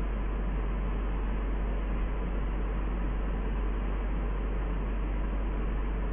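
Steady hiss with a strong low hum underneath, unchanging throughout: background noise of the recording with no speech.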